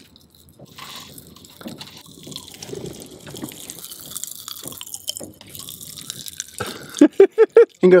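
Sparx popping candy crackling in open mouths: a faint, dense fizz of tiny pops that runs for several seconds. Near the end it gives way to a few loud vocal sounds.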